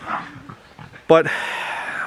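A dog's short bark about a second in, followed by nearly a second of rushing noise.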